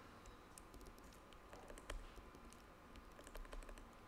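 Faint, irregular keystrokes on a computer keyboard as comment slashes are typed into a code editor.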